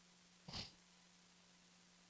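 Near silence: room tone with a faint steady hum, and one brief faint breath near the microphone about half a second in.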